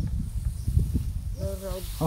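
Rice straw rustling and crackling as hands grope through the flattened stalks, over a low rumble. A short voiced call comes about three-quarters of the way through.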